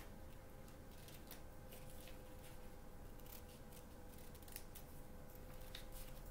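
Scissors cutting paper: a run of faint, irregular snips.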